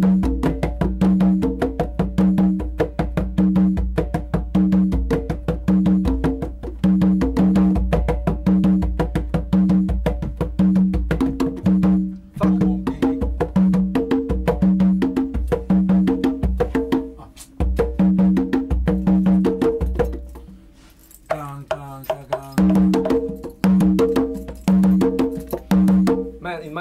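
Congas played by hand in a steady repeating pattern, ringing open tones on two drums pitched apart, mixed with quick sharp slaps and muted strokes. The playing breaks off briefly about twelve seconds in, again just before eighteen seconds, and loosens for a couple of seconds past twenty before picking up again.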